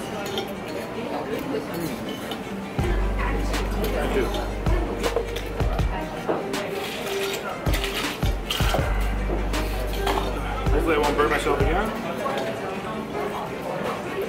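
Background music with a heavy bass beat, over clinking of cutlery, bowls and ice.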